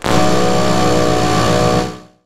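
Air compressor running steadily, pumping air through a hose to inflate a four-wheel-drive's tyre. It starts abruptly and dies away near the end.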